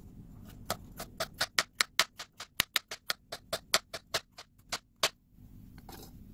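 Kitchen knife slicing a carrot into thin rounds on a plastic cutting board: a quick, even run of sharp chops at about five a second, each blade strike knocking on the board, stopping about five seconds in.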